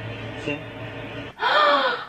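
A young woman's shocked gasp, a short voiced 'oh' falling in pitch, about a second and a half in. Before it there is only a low steady hum and faint background sound.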